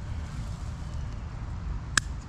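Steady low outdoor rumble, with a single sharp snip near the end: shears cutting through woody thyme stalks.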